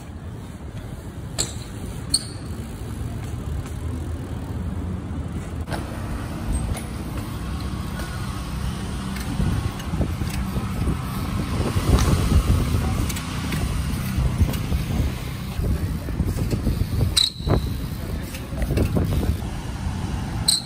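Riding BMX bikes through city traffic: a steady rumble of wind and road noise that grows louder toward the middle. A few sharp clicks with a short high squeal come near the start and again near the end.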